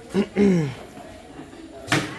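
A person's short two-part vocal sound falling in pitch, then a single sharp knock just before the end.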